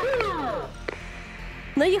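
Music from a TV news show's logo transition: a smooth falling synthesized sweep, then a soft hiss with a single click.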